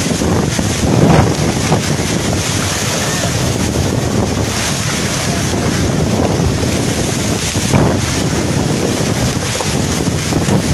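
Cyclone-force wind blowing hard and buffeting the microphone: a loud, continuous rush that swells in gusts about a second in and again near eight seconds.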